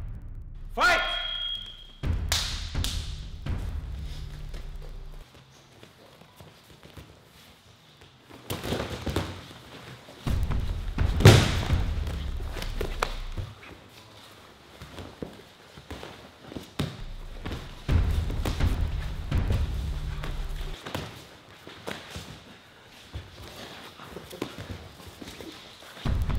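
Brazilian jiu-jitsu grapplers scuffling on foam mats, with irregular thuds of bodies and limbs hitting the mat; the loudest thump comes about eleven seconds in. A short rising sweep sounds about a second in.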